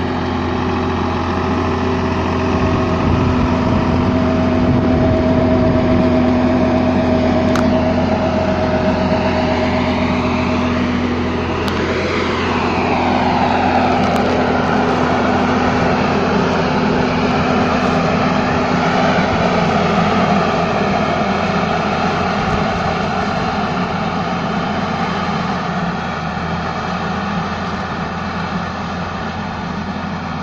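New Holland T3.75F tractor engine running steadily under load, with the rushing air of a tractor-drawn Terramak A-1000 airblast sprayer's fan. The rushing sweeps in pitch and grows broader about twelve seconds in, and a few faint clicks sound over it.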